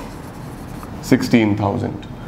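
Marker pen writing on a board, a few faint strokes in the first second. About a second in, a man's voice speaks briefly.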